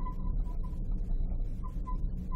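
Marker writing on paper: faint, short scratchy strokes, with a few small squeaks, over a steady low hum.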